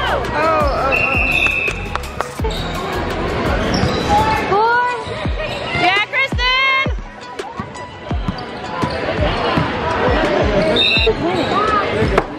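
A basketball bouncing repeatedly on a hardwood gym floor during play, with sneakers squeaking in many short chirps, a quick run of squeaks about six seconds in.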